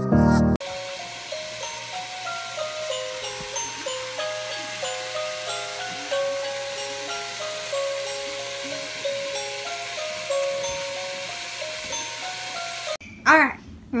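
Animated village skater decoration playing a thin, tinny electronic melody of single notes stepping up and down, like a music box. Just after the start, a louder piece of music with bass cuts off. Near the end a child's voice and laughter come in.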